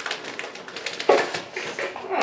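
Wrapping paper being torn and crinkled as a small gift is unwrapped: a run of quick crackles and rips, with a louder burst about a second in.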